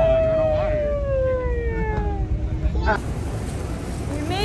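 A toddler's long, drawn-out cry slowly falling in pitch over the steady low hum of an airliner cabin, ending about two seconds in.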